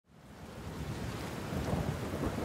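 Rain with a low rumble of thunder, fading in from silence and growing steadily louder.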